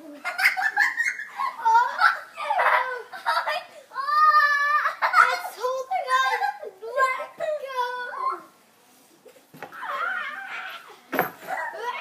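Children laughing, squealing and calling out without clear words, with one long held squeal about four seconds in and a short pause near the end.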